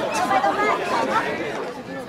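Several people talking over each other near the microphone, untranscribed chatter that fades toward the end.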